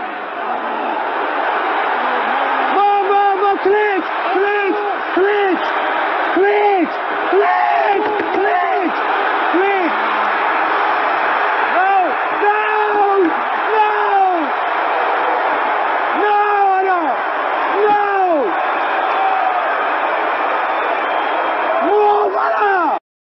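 A crowd shouting over a steady din, with many short shouts that rise and fall in pitch, breaking in one after another.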